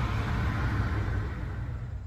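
Steady low rumble and hiss of street traffic noise, fading away near the end.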